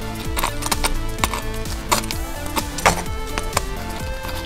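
Background music with steady held notes. Over it come several sharp, irregularly spaced clicks of small plastic parts as a Transformers Legion class Bumblebee figure is handled and adjusted, the loudest about three seconds in.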